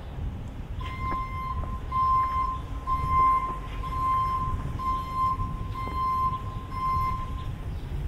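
An electronic beeper sounding a steady high beep about once a second, seven times in a row, over a low street rumble.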